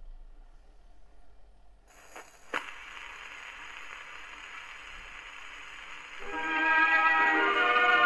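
Acoustic horn gramophone: the soundbox needle is set down on a spinning 78 rpm shellac record with a sharp click about two and a half seconds in, followed by steady surface hiss. About six seconds in, music starts playing through the horn, getting louder.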